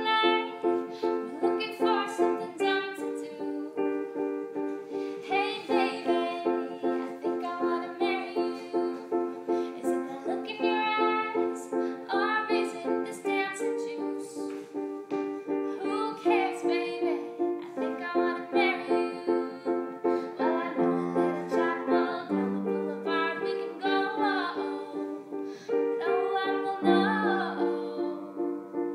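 A woman singing to her own piano accompaniment, the piano striking repeated chords in a steady pulse of about three a second. Lower bass notes join in a few times in the second half.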